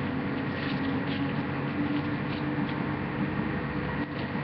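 A wrapper being scrunched up by hand: faint, scattered crinkles over a steady low hum.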